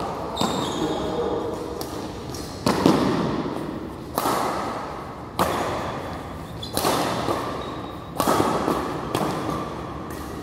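Badminton rackets hitting a shuttlecock in a rally: six sharp smacks, one every second or so, each ringing on in the echo of a large hall.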